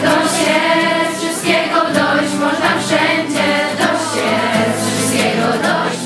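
A large group of young voices singing a song together, with acoustic guitar accompaniment, in continuous song without a pause.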